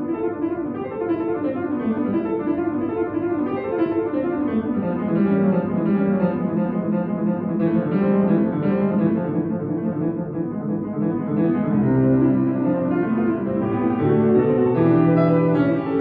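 Solo concert grand piano playing a fast, busy classical passage of quick running notes. Low bass notes come in strongly about three-quarters of the way through.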